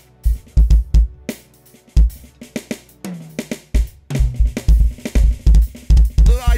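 Roland V-Pro TD-30KV electronic drum kit played live through amplification: kick drum, snare and cymbal hits. The hits are sparse at first and come thicker and faster from about four seconds in.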